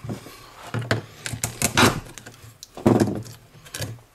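Clicks and scrapes of fingers prying a surface-mount IC chip off a circuit board, its pins already cut through with a chisel. The sharp clicks bunch up near the middle and again about three seconds in.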